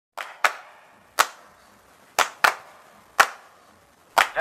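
Six sharp percussive hits, falling in a loose rhythm of pairs and singles about a second apart, each with a short echoing decay.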